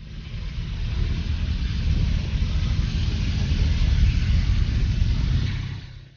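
A deep, steady rumbling noise that swells in over the first second or two and fades away near the end.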